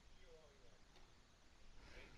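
Near silence: faint room tone, with a few faint wavering sounds in the background.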